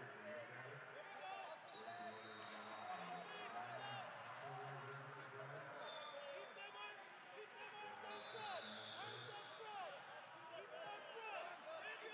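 Indistinct voices of coaches and spectators, with scattered short squeaks, echoing through a large sports dome during a wrestling bout.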